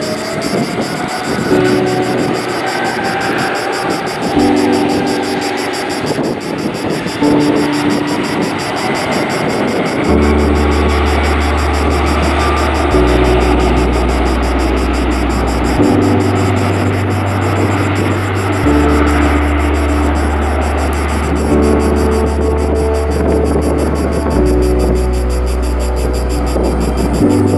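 Background music with repeating chords, joined by a deep bass line about ten seconds in, laid over the steady noise of an Airbus A330-243's Rolls-Royce Trent 700 jet engines as the airliner taxis. A rising whine sounds in the first few seconds.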